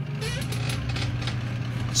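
Steady low hum, with light handling of a plastic model kit hull as it is picked up.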